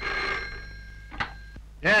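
A desk telephone's bell ringing, loud at first and then fading away. A short click comes just after a second in, and a man answers "yes" at the very end.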